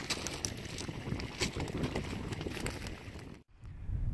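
Wind buffeting an outdoor microphone, a ragged low rumble with a few small knocks of handling, cutting off suddenly about three and a half seconds in.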